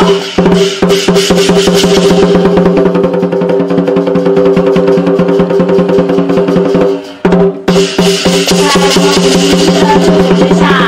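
Lion dance percussion: drum and cymbals beaten in fast, dense strokes over steady ringing tones. It breaks off for about half a second around seven seconds in, then starts again.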